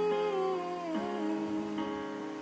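A young woman's voice singing a wordless held note that glides slowly downward in pitch, over sustained accompanying chords that change about a second in.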